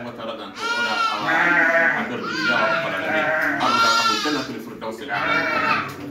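A man's voice chanting in three phrases, with long, wavering held notes.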